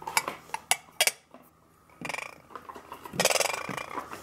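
Glass clinking as a glass teapot and its lid are handled: several sharp clicks in the first second or so. Near the end comes a short rush of tea being poured.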